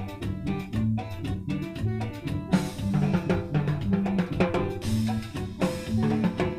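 Loud Latin dance music with a steady drum-kit beat and bass, played over a party sound system; the drums get brighter and fuller about halfway.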